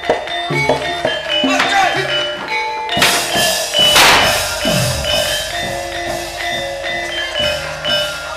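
Gamelan ensemble playing live stage-fight accompaniment: struck metallophone notes and drum strokes, with voices over it. A loud crash comes about three to four seconds in, followed by a quick falling swoop.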